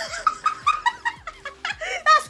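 Young women laughing hard in quick, high-pitched bursts.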